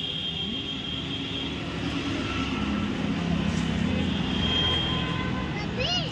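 Roadside traffic noise: vehicle engines running steadily nearby, with faint voices in the background.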